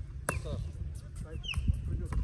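A bird gives a short descending whistled call near the end, one of several like it. A single sharp click comes early on, with a brief spoken word and low wind rumble on the microphone.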